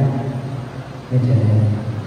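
A man's low voice speaking Thai, with a pause about half a second in and a drawn-out low voice from about a second in.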